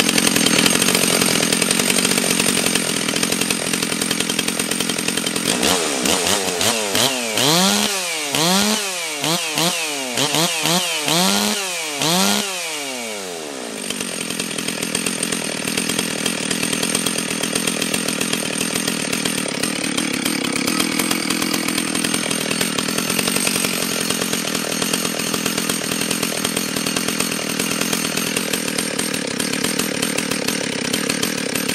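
Stihl 036 (MS 360) chainsaw's 61 cc single-cylinder two-stroke engine running just after a cold start. It runs steadily at first, then revs up and down about seven times in quick succession from about six seconds in. About thirteen seconds in it drops back to a steady idle.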